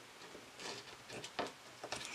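Faint, scattered clicks and light taps of small metal parts being handled as an airsoft inner barrel and hop-up unit are fitted together by hand.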